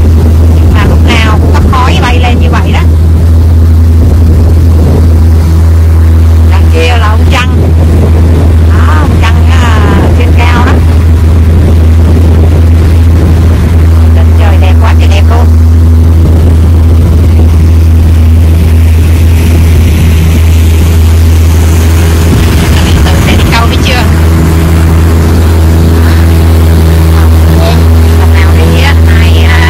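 Boat's outboard motor running steadily at speed, a loud, even low drone under way, with a rushing hiss of wind and water that grows in the second half. Short snatches of voices come through over the engine several times.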